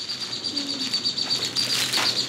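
A thin plastic bag rustling in the hand, loudest near the end, over a steady high-pitched chirping in the background.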